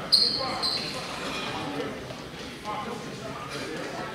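Two short, shrill referee's whistle blasts about half a second apart, at the start, over crowd chatter echoing in a school gym.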